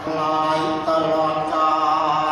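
Buddhist chanting, the voices drawn out on long, steady notes that shift pitch only now and then.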